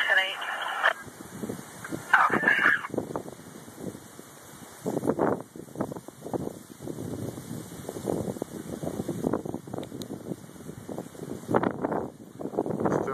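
A brief burst of police-scanner radio speech, then dust-storm wind buffeting the phone's microphone in irregular gusts.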